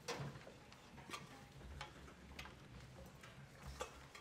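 Footsteps of hard-soled shoes on a wooden stage floor: faint, separate clicks about every half second to second.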